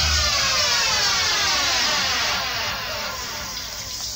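A sound-system effect: a many-toned electronic sweep gliding steadily down in pitch for about three seconds as the bass line cuts out, fading toward the end.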